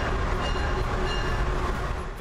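A train heard from inside a passenger car: a steady low rumble with a hiss above it and a faint steady hum.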